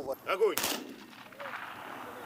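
Honour guard's ceremonial rifle salute: a single volley cracks about half a second in, and its echo dies away over the following second.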